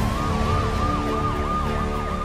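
A siren yelping in fast rising-and-falling whoops, about four a second, layered over the sustained chords of a news intro's theme music.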